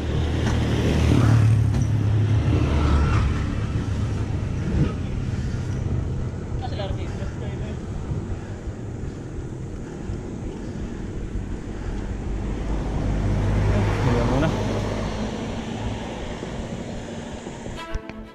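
Wind and road noise on a bicycle-mounted action camera while riding, with a motor vehicle's engine swelling past twice: in the first few seconds and again late on.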